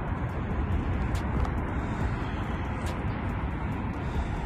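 Wind buffeting the microphone: a steady low rumble with a few faint clicks.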